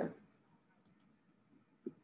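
Near silence in a pause between a woman's spoken sentences, with two faint small clicks about a second in.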